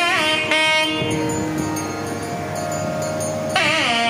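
Nadaswaram playing a Carnatic melody with sliding, ornamented notes. About a second in it settles into a softer, long held note, and the ornamented phrases return loudly near the end.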